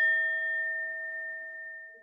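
Small handheld singing bowl ringing out after a single strike, a clear tone with higher overtones that fade first, the whole sound dying away near the end.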